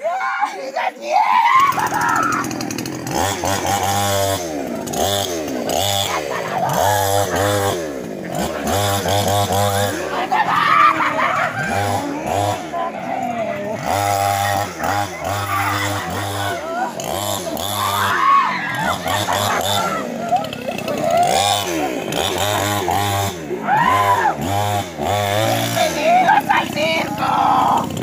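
A petrol two-stroke chainsaw comes in about a second and a half in and is revved again and again, its pitch climbing and dropping with each blip of the throttle.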